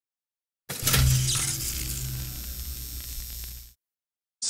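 A produced sound-effect hit for a logo sting: a sudden crash with a low steady hum underneath. It fades over about three seconds and then cuts off abruptly.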